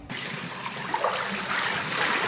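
Swimming-pool water moving and trickling close to the microphone, a steady hiss with a few small splashes.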